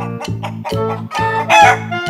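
A chicken call sound effect, lasting under a second and starting about a second in, loudest of anything here, over children's music with a steady beat.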